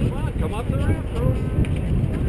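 Wind buffeting the microphone in a steady low rumble, with distant voices calling out briefly in the first second.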